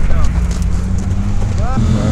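Car engine running with a low, steady drone during a drift run on ice. A short bit of voice comes in near the end.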